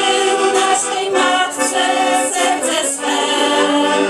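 A small women's vocal group singing a Polish religious song together in several voices.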